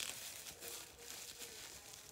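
A sharp click, then packaging crinkling and rustling as a small herb vial is handled and lifted out of the box.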